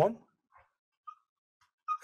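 A spoken word trails off, then near silence broken by three faint, short squeaks of a marker writing on a whiteboard.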